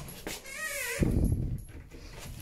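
A door hinge creaking in a short, wavering squeal, followed about a second in by a low thump, the loudest sound.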